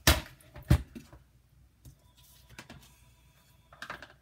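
Two sharp knocks about half a second apart as a plastic paper trimmer is set down on a cutting mat, followed by faint clicks and handling of craft items.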